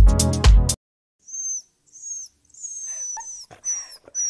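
Dance music with a heavy beat stops under a second in. After a moment's silence comes a series of short, very high-pitched whines from an animal, several of them falling in pitch, with a few soft knocks among them.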